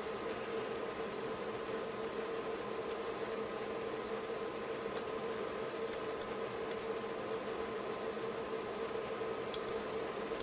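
Steady faint hum, with a few faint ticks as the power supply board's trimmer potentiometer is turned down, and a couple of sharper clicks near the end as it nears the bottom of its travel and starts clicking.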